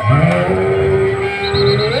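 A single long, held call, steady for well over a second and rising in pitch at the end, over ongoing percussion music.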